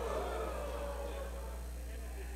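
Quiet stage sound system carrying a steady low mains hum, with a few faint tones gliding down in pitch in the first second.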